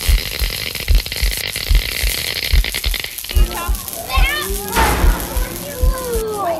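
Haunted-house sound effects played through a speaker: deep thumps in pairs, about one pair a second, under a hissing rattle that stops about halfway through. Children's voices and squeals join in the second half.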